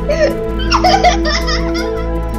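A young girl's high-pitched giggling, starting just after the beginning and breaking off near the end, over soft background music with held notes.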